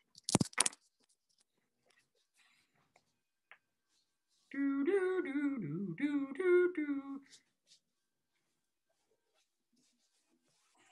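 A couple of sharp knocks at the very start, then a person humming a short wavering tune for about three seconds, with a brief break in the middle.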